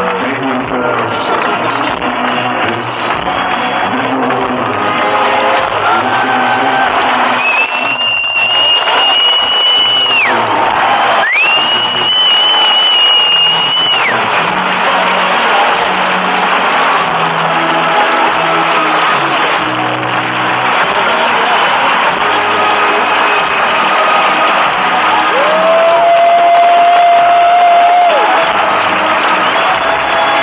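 A live concert band playing, with the crowd cheering over the music. Two long, steady high tones sound about 8 and 11 seconds in, and a lower held note starts near the end.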